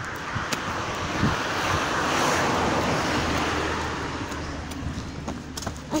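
A car passing by on the road, its road noise swelling to a peak a couple of seconds in and fading away.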